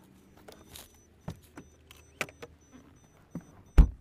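Handling sounds as the driver's door of a Volkswagen Vento is opened and a person climbs into the seat: a few separate sharp clicks and knocks, then a loud low thump just before the end.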